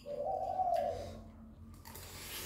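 A small Pomeranian-type dog whining once: a single drawn-out note lasting about a second, rising a little and then dropping away.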